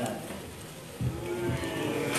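A couple of dull knocks as a plastic water gallon is pushed into a Yamaha Lexi 125 scooter's under-seat storage compartment, about a second in, with a faint drawn-out voice alongside.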